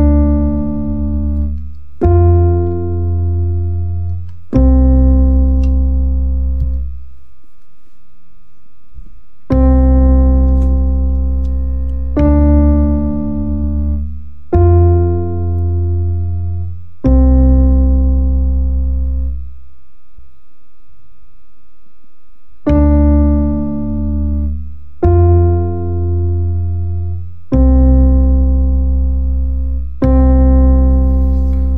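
Electric piano chords struck one at a time, each left to ring and fade for about two seconds, with a strong bass under them. They step through C major seventh, D minor seventh and F major seventh and back to C: the diatonic I, II and IV chords of C major, which here set up the Ionian, Dorian and Lydian modes for soloing.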